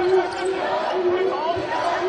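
A basketball being dribbled on a hardwood court amid arena game noise and crowd murmur, with a held low tone that comes and goes in the background.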